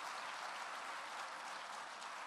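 Audience applauding, a steady even clatter of many hands that eases slightly near the end.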